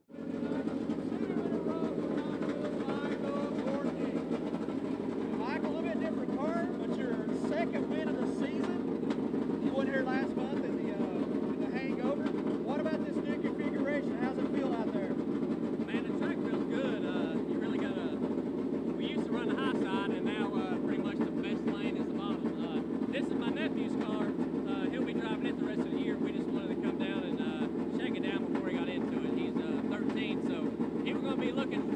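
Steady low drone of engines running at the dirt track, with voices talking over it.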